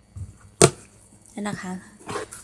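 A taped cardboard carton being pulled open by hand, with one sharp snap about half a second in.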